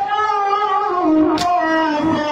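Men's voices chanting a nauha lament, one long held and wavering line. A single sharp strike of matam, hands beating on chests, comes about one and a half seconds in, part of a slow beat roughly every second and a half.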